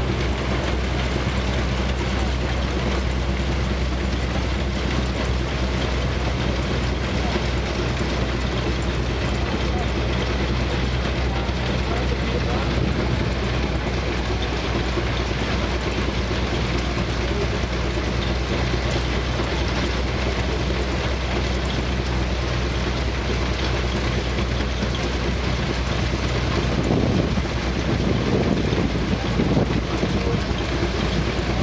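Threshing machine running steadily: a continuous low mechanical drone under the rushing of threshed straw being blown out of its pipe. It grows a little louder for a couple of seconds near the end.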